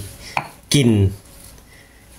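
Stone pestle knocking against a stone mortar: one short, hard clack about a third of a second in.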